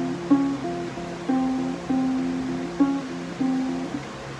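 Acoustic guitar playing a short riff of single plucked notes in a repeating pattern, fretted at the 8th and 10th frets on the D and A strings, each note ringing into the next.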